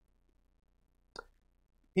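Quiet room tone with a faint low hum, broken by a single short click about a second in; a man's voice starts right at the end.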